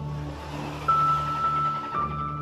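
A gentle ocean wave swelling and washing in, under soft ambient music. About a second in, a high sustained note enters sharply.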